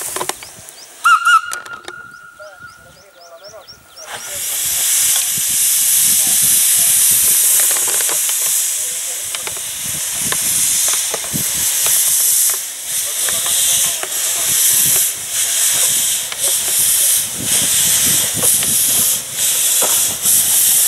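Narrow-gauge steam locomotive: a short whistle blast about a second in, its tone trailing on for a few seconds. At about four seconds a loud, steady hiss of steam venting from the open cylinder drain cocks starts abruptly and carries on as the engine draws near.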